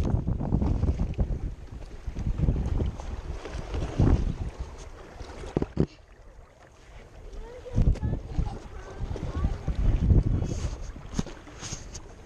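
Wind rumbling on a small action camera's microphone, with a few sharp knocks and scrapes as the wearer climbs over rocks with hands and feet on the stone.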